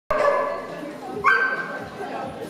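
Dog barking: a sharp bark right at the start, then about a second later a higher call that slides up in pitch and holds for about half a second.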